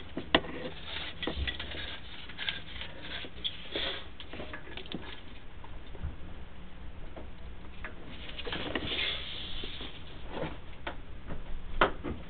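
Sewer inspection camera and its push cable being drawn back up through the house trap and riser, with irregular clicks, knocks and scraping of the cable and camera head against the pipe and the cleanout.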